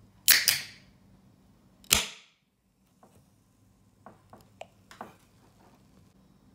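Ring-pull on an aluminium can of carbonated soda cracked open: a sharp pop with a short hiss of escaping gas, then a second sharp crack just under two seconds in, followed by a few faint ticks.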